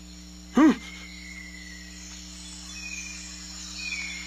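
Cartoon forest ambience: a steady low drone with faint, thin insect-like chirps. A short, loud voiced sound rises and falls in pitch about half a second in.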